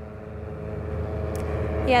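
Outdoor traffic hum from a live street-side microphone: a steady low rumble with a faint constant tone, gradually getting louder as the feed is faded up. A woman starts speaking right at the end.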